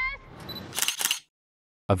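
The last pitched tones of a film soundtrack fade out, then a short, rapid run of sharp clicks comes about a second in. After that the sound cuts to dead silence.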